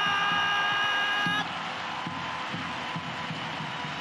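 Stadium sound just after a goal: a steady held tone cuts off about a second and a half in, leaving a continuous wash of crowd noise.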